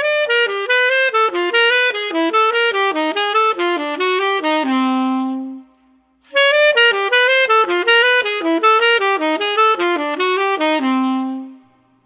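Unaccompanied saxophone playing a fast jazz line of descending triads, each approached by a half-step chromatic tone, with no harmony underneath. The line is played twice; each pass runs down from a high note and ends on a held low note.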